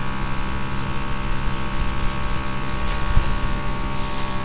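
Airbrush makeup compressor running steadily with a hum, and the airbrush hissing as it sprays foundation onto a face.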